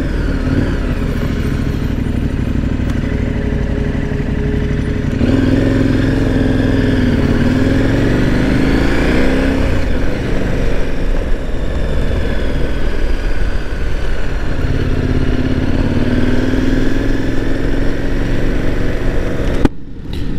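KTM 1090 Adventure R's V-twin engine running as the motorcycle rides at low speed. The throttle opens about five seconds in and the engine note rises, eases off around ten seconds, then rises again later. The sound cuts out briefly just before the end.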